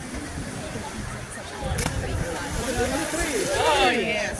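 People talking in the background, with a louder, higher voice near the end, over a low irregular rumble.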